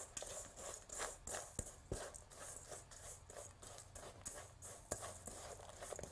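Rubber spatula stirring and scraping a crushed-cookie crumb and butter mixture around a stainless steel mixing bowl: faint, irregular scraping with light clicks.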